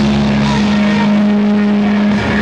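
Live punk rock band playing loudly, a distorted electric guitar holding one low note that drones steadily through, over a wash of amplified noise.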